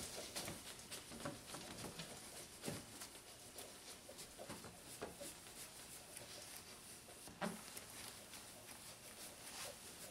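Faint rubbing of a foam applicator and cloth wiped over a plastic headlight lens, spreading headlight protectant, with a few soft knocks, the clearest about seven and a half seconds in.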